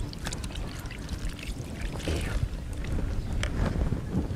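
Water poured from a plastic jug over hands into a plastic basin, splashing and trickling, over a steady low rumble.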